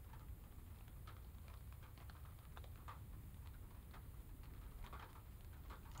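Faint, irregular ticks of raindrops falling on a car's windscreen and bodywork, heard from inside the car, over a low steady rumble.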